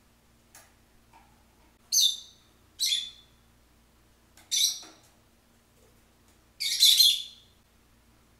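Caged pet parrot giving four loud, shrill calls, about two, three, four and a half and seven seconds in; the last call is the longest and loudest.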